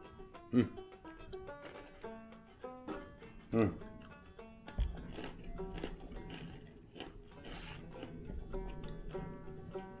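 Banjo music with quick plucked notes playing throughout, with a man's short "mm" of relish about half a second in and again about three and a half seconds in, and a low knock near five seconds.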